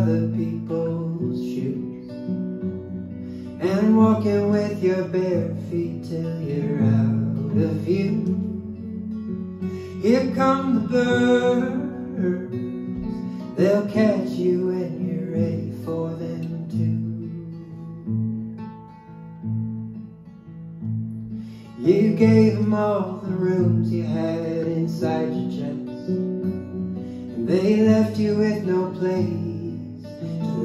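Acoustic guitar played with a man singing over it in separate phrases, a live solo folk performance.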